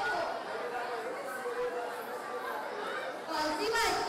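Speech only: actors' dialogue on a stage, picked up through microphones in a large hall and getting louder near the end.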